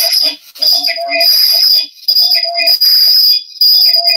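Glitching online-call audio: a short fragment of a voice repeated rapidly over and over in a stuttering loop, with a high steady tone running through it, a sign of the connection breaking up.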